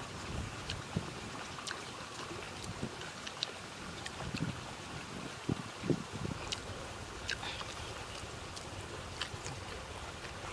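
Wind buffeting the microphone, with a man chewing food through it: scattered small clicks and smacks of the mouth, and a few low thuds about four to six seconds in.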